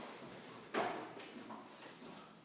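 A man sitting down onto a stairlift seat: a sudden soft thump about three quarters of a second in, then a lighter knock.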